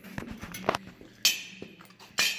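Metal parts and hand tools clinking and knocking as they are handled, with one louder ringing metal clank a little past a second in.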